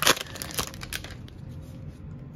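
A hockey card pack's wrapper being torn open: a short run of crinkly tearing in about the first second, then quieter rustling as the cards are handled.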